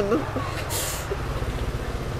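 A passing motorbike engine running low and steady with a fast pulse, with a short hiss about three-quarters of a second in.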